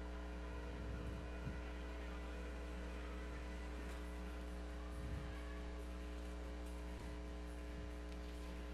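Faint, steady electrical hum from the audio chain: mains hum with several steady tones under a low haze, unchanging throughout.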